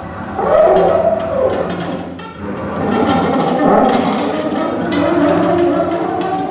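Free-improvised ensemble music: sliding, wavering low tones with scattered clicks and taps.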